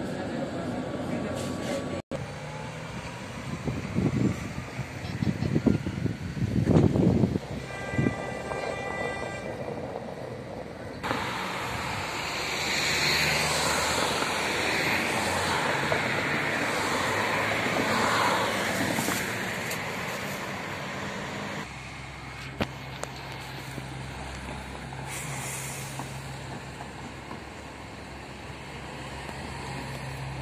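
Street traffic: cars driving past on a city road, loudest in the middle of the stretch. There are a few low rumbling thumps in the first seconds and a brief high tone about eight seconds in. A quieter steady low hum follows near the end.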